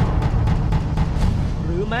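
Epic film-trailer soundtrack: deep booming percussion over a heavy rumble, beating fast and steadily. A man's voice comes in near the end.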